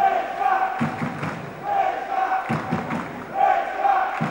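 Spectators chanting in rhythm, one held chant phrase coming round about every second and a half to two seconds.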